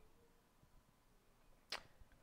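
Near silence: room tone, with one short faint click near the end.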